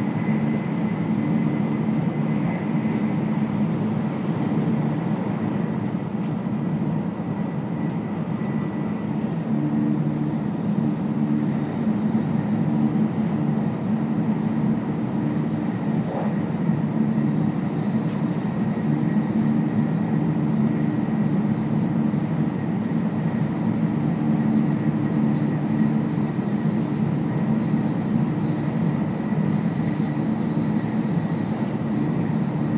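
Cabin running noise inside an N700A-series Shinkansen car: a steady low rumble. A faint high tone fades away during the first few seconds, and a higher faint tone comes in during the second half.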